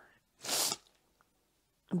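A single short, sharp intake of breath through the nose or mouth about half a second in, in a pause between phrases of speech; the rest of the pause is near silent.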